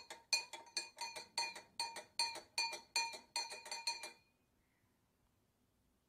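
Metal spoon stirring sugar into water in a drinking glass, clinking against the glass about three times a second with a ringing tone. The clinking stops about four seconds in.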